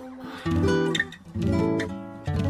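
Background music: acoustic guitar strumming chords, with a new chord struck about once a second.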